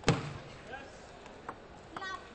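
Celluloid table tennis ball knocks: one loud, sharp hit just after the start, then a lighter click about a second and a half in and another at the end.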